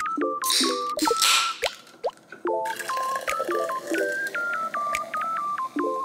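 A soda can's tab cracked open with a hiss in the first second and a half, then fizzy soda poured into a glass jar, over plinky, beeping background music.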